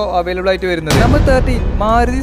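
A sudden deep boom about a second in, its low rumble carrying on after it, over a voice and a steady low bass.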